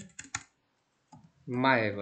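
Computer keyboard keystrokes: a quick burst of several key clicks in the first half second, as text is deleted and retyped, followed about a second and a half in by a short spoken sound from a man.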